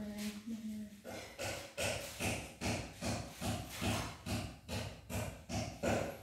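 A woman's voice chanting a prayer aloud. It opens with one long held note that falls slightly, then goes into a quick, even run of syllables, about three a second.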